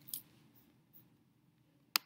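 A single sharp computer mouse click near the end, after a brief soft scrape near the start, over a low steady room hum.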